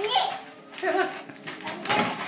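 A toddler's wordless vocal sounds: two short, high-pitched voiced calls, one at the start and one about a second in.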